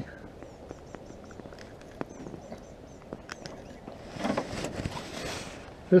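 Quiet open-air background with small clicks and handling noises while a small bass is worked off the hook by hand, and a short rustling noise about four seconds in.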